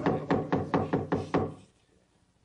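Rapid series of knocks, about five a second, over a murmur of voices. The knocking and the murmur die away together about a second and a half in, as a meeting is called to order.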